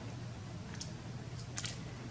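Paper sheets being handled and set down on a table: a faint tick, then a short sharp click about a second and a half in, over a low steady room hum.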